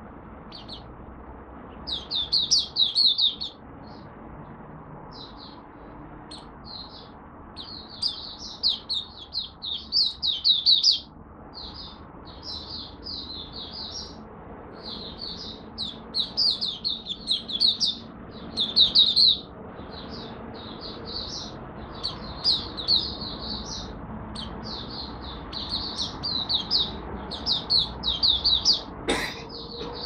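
Caged Malaysian white-eye (mata puteh) singing in fast runs of high twittering notes, in bursts of a second or three with short pauses between; the bird is in light moult and, by its owner's judgment, off form. A single sharp click near the end.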